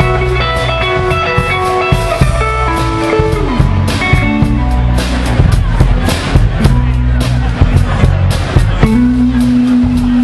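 Live rock band playing: a drum kit keeps a steady beat under bass notes and a lead melody of long held notes, one sliding down in pitch about three and a half seconds in.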